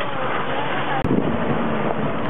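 A motor running steadily under wind noise on the microphone, broken by an abrupt cut about a second in.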